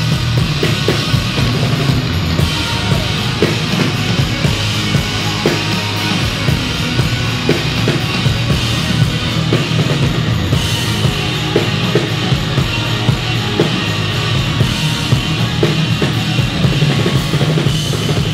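Loud heavy rock music played by a band, with the drum kit prominent.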